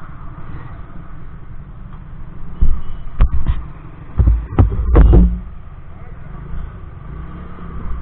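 A motor scooter's engine running at low revs with a steady low hum while it rolls slowly and comes to a stop. Around the middle, a quick series of loud knocks and bumps stands out above it.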